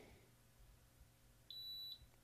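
A racket swingweight machine gives one short electronic beep near the end, a steady high tone lasting under half a second, signalling that its swing weight measurement is done. Before it there is only faint room tone.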